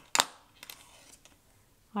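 A pair of scissors making one sharp click just after the start, followed by a few faint clicks.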